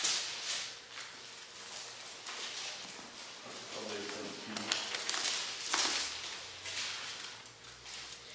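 Paper rustling as the pages of a Bible are leafed through at a pulpit to find a passage, with a few light clicks and taps about halfway through.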